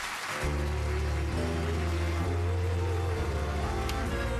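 Studio entrance music comes in with a heavy, sustained bass about half a second in, over studio audience applause.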